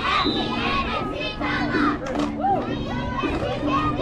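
Crowd of spectators in the stands, with children shouting and calling over one another. A low steady tone comes and goes in short stretches beneath the voices.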